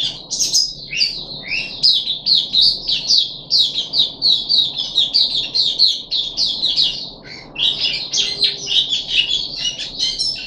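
Caged white-eye (mata puteh) singing a rapid, unbroken run of high chirping notes, several a second, with a brief lull about seven seconds in before the song picks up again.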